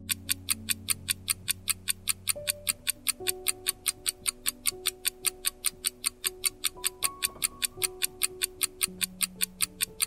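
Countdown-timer sound effect: a clock-like tick repeating evenly, about five ticks a second, over soft background music of slow held notes.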